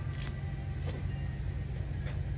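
Steady low hum and rumble of store room tone, with a few faint clicks.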